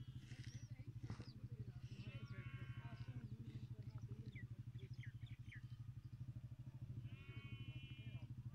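A small engine idling with a steady, fast low throb. Over it come three short, high bleating calls from livestock: at the start, about two seconds in, and near the end.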